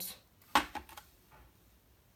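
Kitchen items set down on a plastic tray: one short, sharp knock about half a second in, with a few lighter clicks just after.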